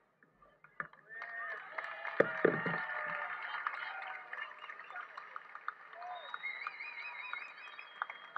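A crowd applauding and cheering, breaking out about a second in with many hands clapping and voices calling. A high warbling whistle-like tone comes in near the end.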